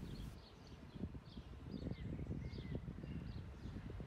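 Quiet outdoor ambience: scattered short bird chirps over a steady low rumble.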